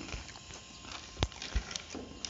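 Eating sounds at a table: metal spoons clicking and scraping on plates and chewing, with a sharp click a little over a second in and a soft thump shortly after.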